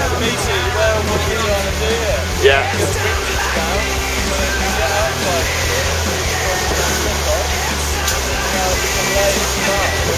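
People talking over background music.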